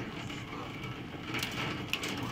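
Steady hiss of a heavy rain shower pouring onto a flooded dirt road and its puddles.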